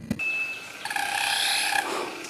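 A bird's wing-feather display sound: a thin steady whistle, then a buzzy, pitched rattle lasting about a second that fades out near the end.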